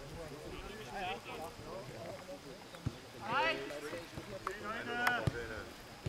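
Footballers' voices calling across the pitch during play, with two loud shouts about three and five seconds in. A couple of sharp knocks of the ball being kicked.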